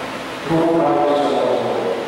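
A man's voice chanting a prayer on one held pitch, entering about half a second in after a short breath pause and holding the note steady without sliding.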